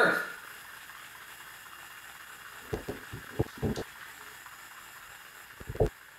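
Steady background hiss, with a few soft, short knocks about halfway through and a sharper one near the end.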